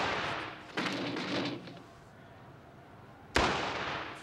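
Loud, sharp bangs, each with a long echoing tail. One comes about three-quarters of a second in, and a louder one a little after three seconds.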